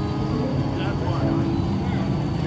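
Car engines running at low speed as show cars roll by, a steady low rumble under voices from the crowd.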